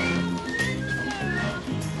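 Background music: held notes underneath, with a high melody line that glides between pitches.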